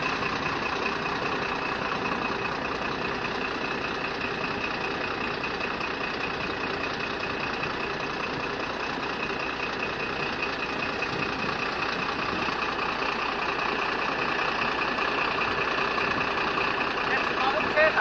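A vehicle's engine running steadily, heard from inside the vehicle, as a constant even drone.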